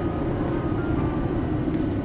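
Lamborghini Gallardo's V10 engine heard from inside the cabin, a steady low drone while the car slows slightly for a right-hand turn under light braking.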